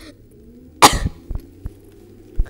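A single short cough about a second in, followed by a few faint clicks.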